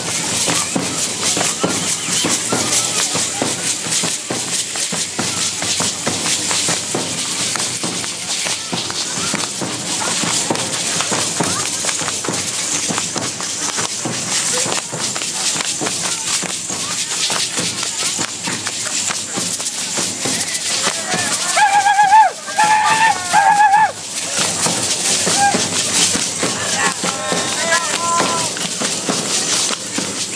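Matachines dancers' hand rattles and the fringes on their costumes rattling, with feet stamping on dirt, in a dense, continuous clatter. A high wavering voice or instrument rises briefly over it about three-quarters of the way through.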